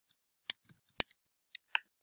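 Computer keyboard keys clicking as a word is typed: about eight short, irregular keystrokes, the loudest about a second in.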